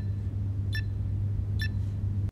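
Electronic safe keypad beeping as buttons are pressed to enter a code: three short high beeps, a little under a second apart, over a steady low hum.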